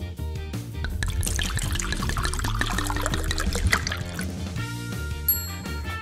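A green smoothie poured from a blender jug into a glass, the pour running from about a second in to about four seconds, over background music.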